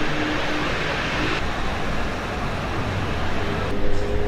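Street traffic noise: a steady rush of passing vehicles, with a faint engine note rising slowly near the end.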